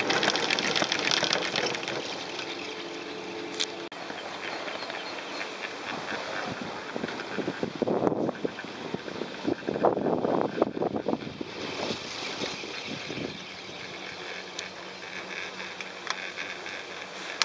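Four-seater chairlift ride: wind buffeting the microphone over the steady running noise of the lift, with gusty bursts strongest about eight to eleven seconds in and a few sharp clicks.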